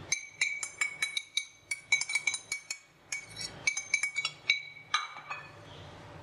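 A metal spoon tapping and scraping against a glass bowl to knock sifted flour out into the batter, each tap ringing briefly with a clear glassy tone. The taps come several a second in two runs, with a short pause a little before the middle.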